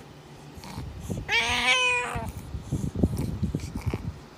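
Domestic cat giving a single meow of about a second, a little under halfway in, followed by a run of soft low thumps.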